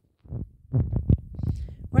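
Domestic cat purring right up against the microphone: a low throbbing rumble that starts about a third of a second in.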